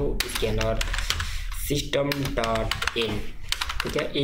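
Typing on a computer keyboard: quick, irregular key clicks throughout, as a line of code is entered, with a few short bits of voice between them.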